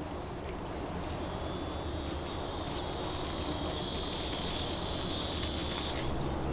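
Insects buzzing steadily at a high pitch, with a second, slightly lower buzz joining about two seconds in, over a low rumble.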